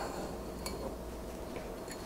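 Faint light clicks of a thin steel marking rule being handled and lifted off a wooden board, two small ticks over low room noise.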